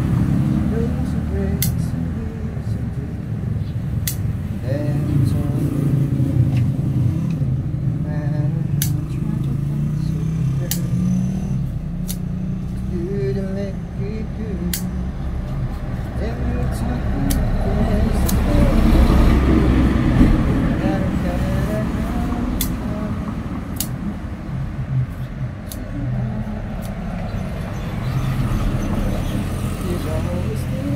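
Scissors snipping leaves and stems, about a dozen sharp clicks scattered through, over a steady low rumble and indistinct voices in the background.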